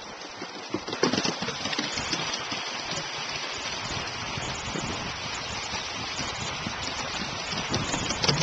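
A dog running over wooden boardwalk planks: a rapid run of footfalls and knocks on the boards over a steady rushing noise that starts about a second in, with the loudest knocks near the end as the dog passes close.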